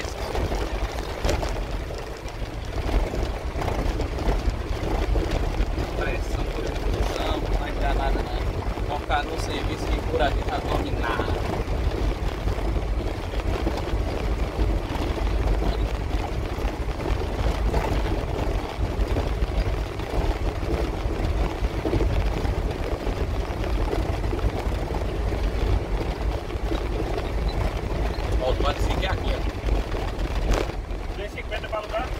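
Steady low rumble of the truck's engine and its tyres running over cobblestone paving, heard inside the cab.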